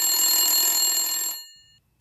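Telephone ringing: one long ring with a harsh, bell-like edge that dies away about a second and a half in, the sound of a call going through.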